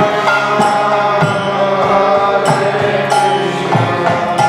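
Devotional Indian music: sustained melodic tones over a hand drum played in rhythm, whose deep strokes bend in pitch about every second and a half.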